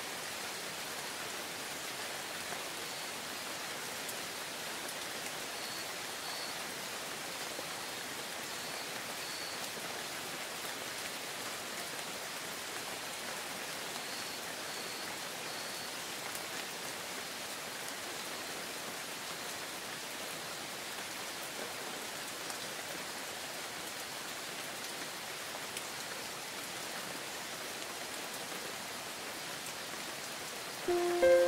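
Steady rain falling, an even hiss that neither builds nor fades.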